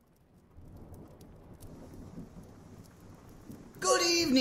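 Steady rain with a low rumble of thunder, fading in about half a second in; a man's voice starts just at the end.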